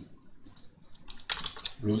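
A few quick computer keyboard keystrokes a little over a second in, after a quiet stretch.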